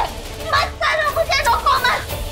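Several women shouting and crying out over one another during a physical scuffle, in short shrill overlapping yells.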